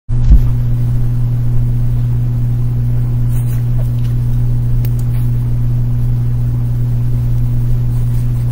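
A loud, steady low hum with a deeper rumble under it, starting as the recording begins, with a short knock right at the start and a few faint clicks.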